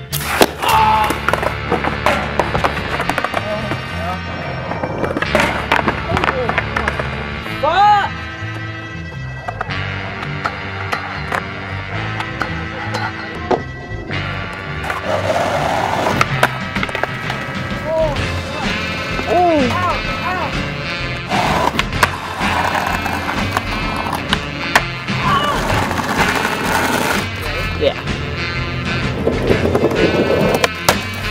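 Skateboard wheels rolling on pavement, with sharp clacks of the board popping and landing, over a music track with vocals.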